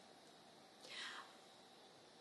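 Near silence: room tone, with a single faint breath of about half a second, about a second in.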